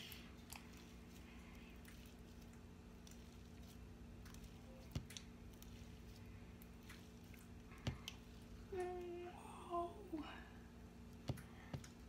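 Very sticky homemade glue slime being stretched and pulled by hand, giving a few faint clicks and sticky pops over a steady low hum.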